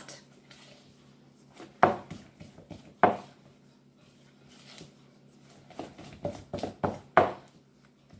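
Spatula stirring soft wholemeal brown-bread dough in a glass mixing bowl: quiet scraping broken by sharp knocks against the bowl, one about two seconds in, another a second later, and a quick run of them near the end.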